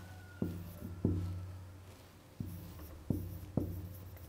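Dry-erase marker writing on a whiteboard: about six sharp taps as the marker strikes the board, each with a short low ring, the loudest about a second in.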